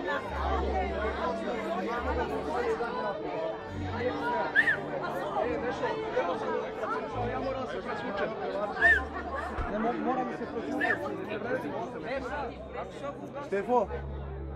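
Several men talking over one another in background chatter, with no single voice clear.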